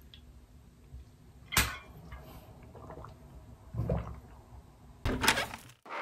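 Someone drinking from a water bottle, with a single sharp knock about a second and a half in. Near the end, louder noisy sounds start and then break off.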